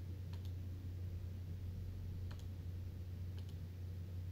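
Three faint double clicks at a computer desk, at uneven intervals, over a steady low hum.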